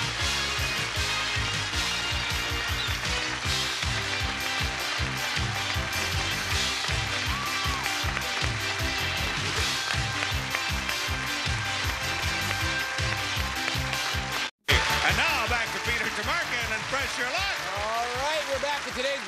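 Studio audience applauding over game-show music. The sound cuts out abruptly a little after fourteen seconds in, then applause resumes with excited voices.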